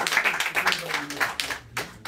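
Audience clapping, a quick patter of hand claps with voices underneath, thinning out near the end.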